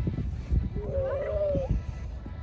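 A young child's drawn-out high call lasting about a second, rising and falling a little, over low thumps from running footsteps and wind on the microphone.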